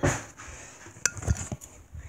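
Light clinks and knocks of kitchenware being handled on a countertop: one at the start, then a quick run of about four about a second in.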